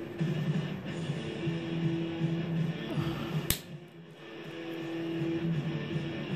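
Background music with long held notes. A little past halfway there is one sharp click, as a tool of a Swiss Army pocket knife snaps shut.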